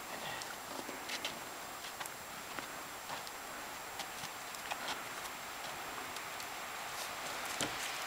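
Faint footsteps crunching on packed snow, with a few scattered light knocks, over a steady background hiss.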